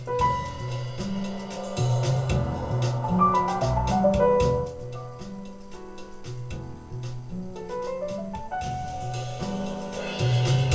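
An instrumental track with piano, a walking bass line and drums, played from an MP3 player through a homemade JFET preamplifier into a 40-year-old Sansui stereo receiver and its speakers, heard in the room. The music gets quieter about halfway through.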